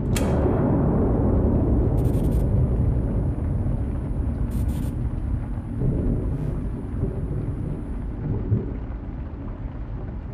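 Horror ambience: a sudden low boom that settles into a deep, thunder-like rumble, slowly fading. A faint high whine runs under most of it, and two brief static crackles come about two and four and a half seconds in.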